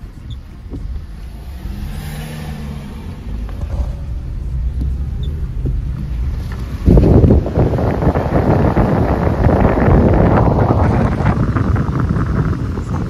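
Car cabin rumble of engine and road noise while driving, then about seven seconds in a sudden loud rush of wind buffeting the microphone as the phone is held at the open side window of the moving car.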